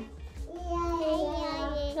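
A toddler singing into a handheld microphone: after a short pause, one long, slightly wavering note from about half a second in.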